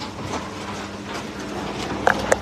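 Steady background noise with a low hum and a few faint scattered clicks.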